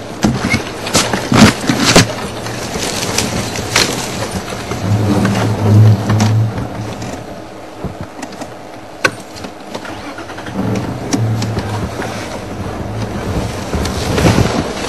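Safari vehicle's engine running with a low drone that swells about five seconds in and again near the end, with several sharp knocks in the first few seconds and one more about nine seconds in.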